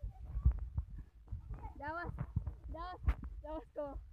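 A few short, faint calls from children's voices, with low rumbling thumps from handling of the phone microphone underneath.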